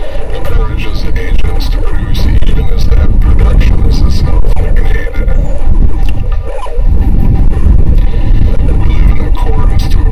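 Experimental electronic noise: a loud, dense low rumble with a smeared, unintelligible voice-like layer and scattered crackle, in the manner of site recordings degraded by repeated re-recording.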